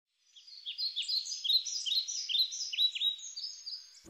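Small birds chirping: quick, high, overlapping chirps, several a second, many sliding sharply down in pitch.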